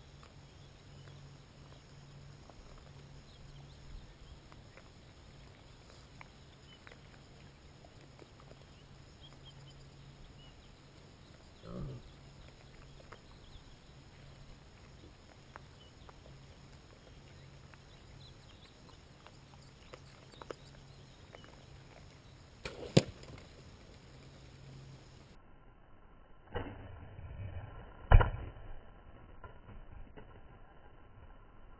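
Bow shots at wild hogs: a sharp snap of a bowstring released about two-thirds of the way in, then, sounding duller, a smaller thump and a heavier one near the end, the last the loudest. A faint thump comes before the middle.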